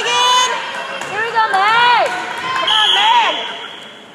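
Girls' voices shouting and cheering in high-pitched, arching calls, several in a row, as volleyball players rally together between points. A steady high tone joins about three seconds in.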